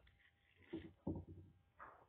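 A few faint knocks and scrapes of a knife and sharpener being handled and set down on a workbench.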